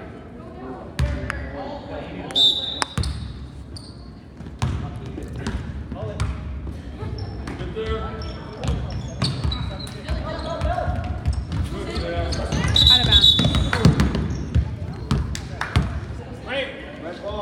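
Basketball game play: a ball bouncing on a gym floor in irregular knocks, amid players and spectators talking and calling out.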